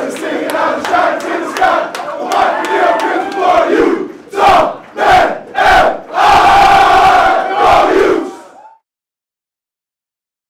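A team of football players shouting and chanting together as a group. After a few seconds of mixed voices come three short loud shouts in quick succession, then one long loud shout that cuts off near the end.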